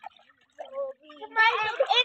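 Water sloshing as children move about in a small plastic paddling pool. About a second and a half in, a loud voice starts up.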